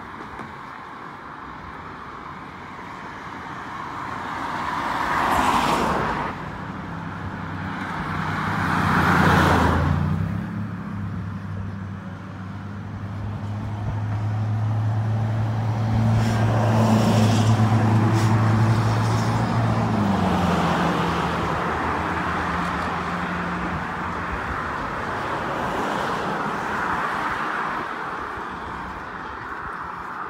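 Road traffic passing on the bridge roadway: two cars rush by about five and nine seconds in, each swelling and fading. Then a steady low engine hum runs from about eight to twenty seconds in, with the road noise rising and falling through the rest.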